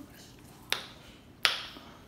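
Two sharp clicks, the second about two-thirds of a second after the first.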